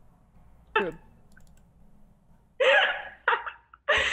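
A woman laughing in two short breathy bursts near the end, after a single spoken word.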